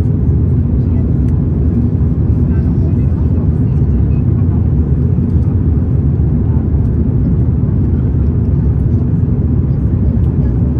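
Steady low rumble of airflow and engines heard inside the cabin of an Airbus A330-900neo descending on approach.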